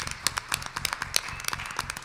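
Scattered hand clapping from a few people in the audience, a quick irregular patter of sharp claps.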